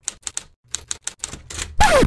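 Rapid typewriter key clicks, a dozen or so in quick runs with a short pause about half a second in: a typing sound effect laid over text being typed out letter by letter.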